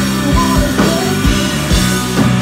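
Live rock band playing: a woman singing over electric guitar and a steady drum beat.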